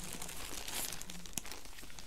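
Clear plastic bags crinkling and rustling as hands rummage among yarn skeins and lift some out, with a few sharper crackles.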